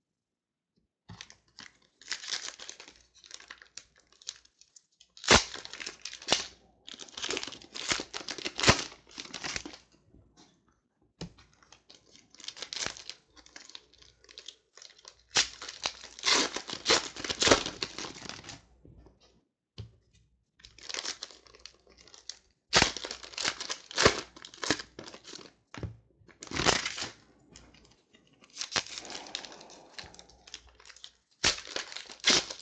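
Plastic trading-card pack wrappers being torn open and crinkled by hand, in irregular bursts with short pauses and a few sharp clicks.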